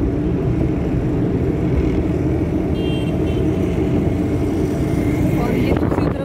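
Steady engine and tyre noise of a moving road vehicle heard from inside its cabin, with a few brief high beeps about halfway through.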